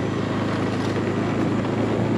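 Small motorcycle engine running steadily, a constant low hum with road and air noise, as the bike is ridden along a paved lane.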